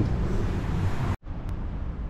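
Outdoor city-street background noise: a steady rumble of traffic with wind buffeting the microphone. It cuts out for an instant just over a second in, then carries on slightly duller.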